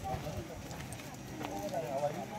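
Faint voices of people talking, one of them high-pitched like a child's, over low thuds of footsteps on a dirt path.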